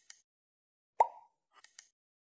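Sound effects of a subscribe-button animation: quick mouse clicks at the start, a short pop about a second in, and a few more clicks near the end.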